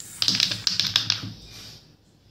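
Quick run of clicks and taps as chunky alphabet letters are handled and pressed into place on a paper board, lasting about a second and a half.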